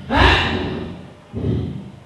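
A woman breathing hard right into a handheld microphone: a loud gasping exhale that fades over about a second, then a shorter one near the end.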